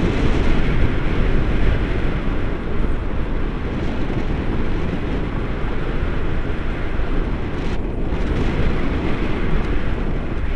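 Steady rumble of wind buffeting an action camera's microphone in the airflow of a paraglider in flight. It is loud, with the weight of the noise low down.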